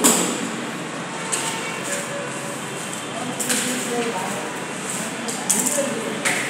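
Hand tools knocking and clicking on a red metal fire door frame during assembly. A sharp knock comes right at the start, followed by scattered lighter taps and clicks.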